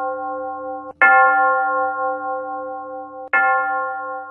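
Bell-like chime notes in a music track: a new note is struck about a second in and another near the end, each ringing on and slowly fading.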